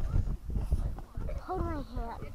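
Voices of people talking, with one voice rising and falling clearly in the second half, over low rumbling knocks from the camera being jostled as it is carried.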